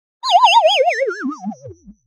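A cartoon 'boing'-style sound effect: a single wobbling tone that warbles quickly while sliding steadily down in pitch for about a second and a half, fading out near the end.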